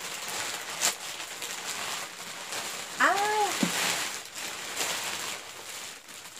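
Plastic shipping bag rustling and crinkling as a wrapped handbag is pulled out of it, with one short vocal sound from the woman about three seconds in.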